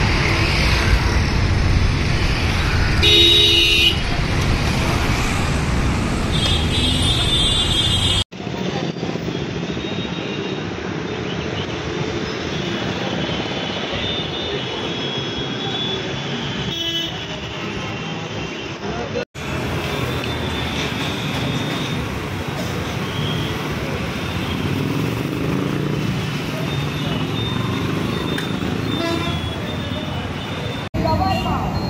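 Street traffic noise with vehicle horns tooting, a short horn about three seconds in and another a few seconds later. The sound drops out for an instant twice.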